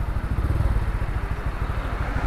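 Honda Wave 54FI's single-cylinder four-stroke engine idling steadily, with an even, quick putter.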